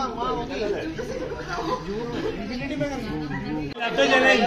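Several people talking at once in a large room: indistinct, overlapping chatter with no single clear voice.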